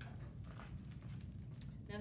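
Low room noise with faint rustling of picture-book pages being turned.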